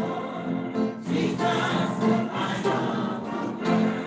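A choir singing a gospel song, many voices together in phrases of about a second.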